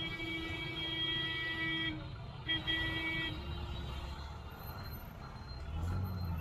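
A vehicle horn held steadily for about two seconds, then sounded again briefly, over the low rumble of engines in congested street traffic.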